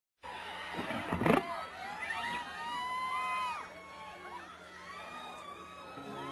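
Rock concert crowd before a song, many voices screaming and whistling in rising-and-falling cries, with a loud thump about a second in.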